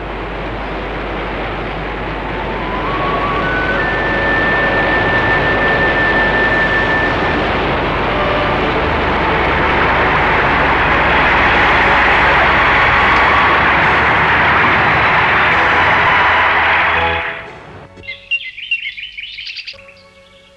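Heavy rainstorm: a dense, steady hiss of pouring rain that swells and then cuts off suddenly near the end, with a few rising music notes over it early on. After it stops, birds chirp briefly.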